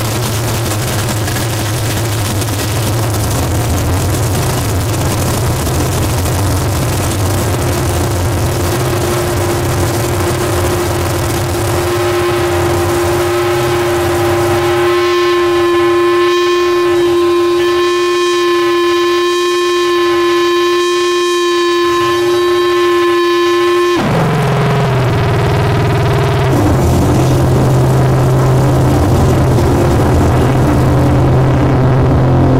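Harsh noise played live through a chain of effects pedals and a small mixer: a dense, loud wall of distorted noise. About halfway through, a steady pitched drone with overtones takes over while the low rumble drops away. Some nine seconds later the drone cuts off suddenly and the low noise comes back.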